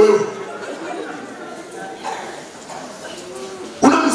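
A congregation murmuring and chattering in a large, echoing church hall, in a pause between a man's loud preaching into a microphone, which stops just after the start and resumes near the end.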